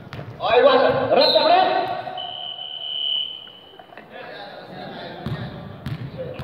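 Sounds of an indoor basketball game in a large gym: men shouting loudly for about the first two seconds, then a single steady high-pitched squeal lasting under two seconds, and a couple of ball bounces on the hardwood near the end.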